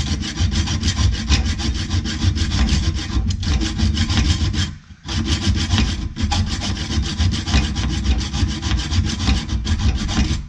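Small hand hacksaw cutting through a metric carriage bolt held in a bench vise: rapid back-and-forth strokes of the blade on metal, with a brief pause about five seconds in.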